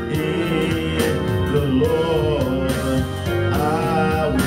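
A man singing a gospel song into a microphone, holding notes with vibrato, over a recorded gospel backing track with bass and accompaniment.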